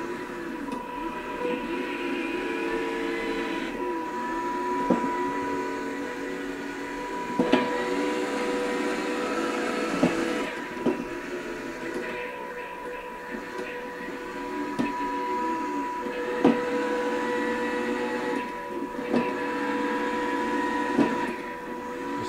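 Small electric drive motors of an Arduino-controlled line-following robot whining as it drives and steers along the tape line, pitch rising and falling as it speeds up, slows and turns. A steady high-pitched whine runs underneath, and there are several sharp clicks along the way.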